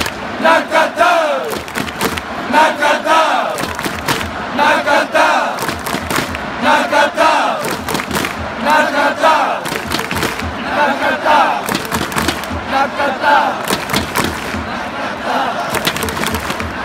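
Japanese baseball cheering section chanting in unison for a batter, one short shouted phrase about every two seconds. Sharp, regular beats run through the chant.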